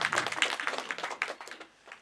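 Audience applauding, a dense patter of many hands clapping that dies away about a second and a half in.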